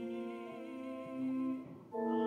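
A hymn being sung, with long held notes and vibrato, and a brief drop in sound between phrases near the end.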